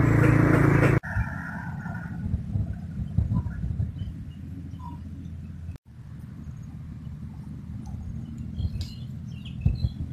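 Outdoor ambience: a low steady rumble with a few faint bird chirps. A louder sound cuts off abruptly about a second in, where the picture changes.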